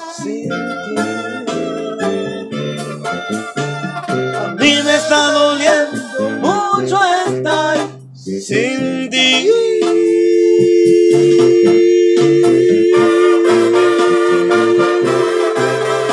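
Instrumental break of a Mexican regional song, with brass over a stepping bass line. From about ten seconds in, a long two-note brass chord is held until just before the end.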